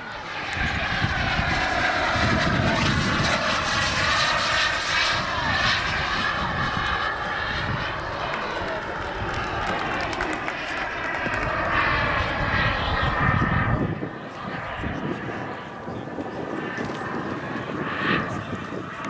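Turbine whine and jet rush of a giant-scale radio-controlled F-15 Eagle model jet flying past. The pitch sweeps up and down as it passes, and the sound drops off at about fourteen seconds.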